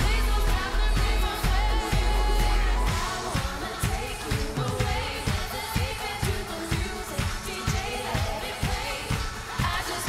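Live pop band with a woman singing: heavy sustained bass for the first three seconds or so, then a steady drum beat under the vocal.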